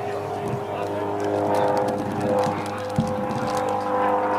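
Steady electrical hum from a high-voltage substation: several held pitches stacked on 100 Hz that never change. A single short knock about three seconds in.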